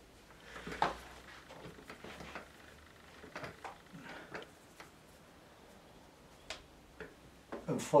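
Quiet handling sounds of watercolour painting: a few light clicks and taps of a paintbrush being worked, with a sharper click about a second in and two more shortly before the end.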